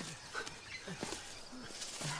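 Short grunts and breaths of effort from several people climbing a steep slope, with scattered footsteps and clicks in the undergrowth.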